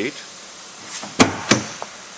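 A 2011 Chevrolet Silverado 1500 pickup's tailgate being opened: two sharp clunks about a third of a second apart, then a fainter click.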